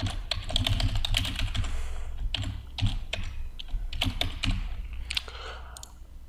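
Typing on a computer keyboard: quick runs of keystrokes that thin out near the end. A low steady hum runs underneath.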